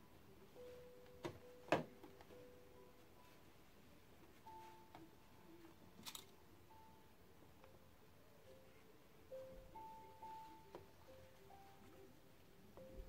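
Faint background music of held, changing notes, near silence. Two sharp clicks come about a second and a half in, and another click about six seconds in as a pin is taken from the pin cushion.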